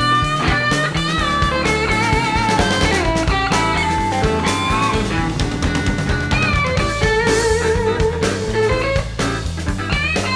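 Electric blues band playing an instrumental break: a lead electric guitar solo of bent, wavering notes over bass and a drum kit.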